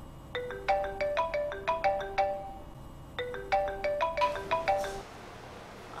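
An iPhone ringtone signalling an incoming call: a short melody of quick, bright pitched notes, played twice with a brief pause between.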